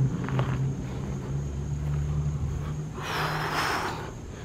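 Low, steady hum of a motor vehicle's engine running, its pitch stepping up slightly about halfway through. A short hiss comes near the end.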